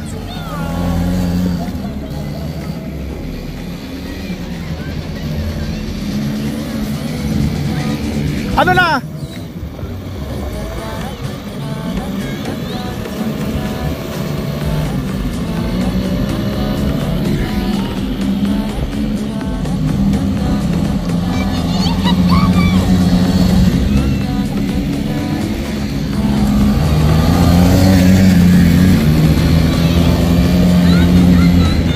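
Small quad bike (ATV) engine running at low speed on dirt, its pitch wavering with the throttle and growing louder near the end.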